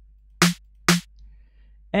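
Two hits of an electronic snare sample, an 808-style soft snare layered with a short clap, played back from a software drum sampler about half a second apart; each is a brief low thud under a bright, noisy crack.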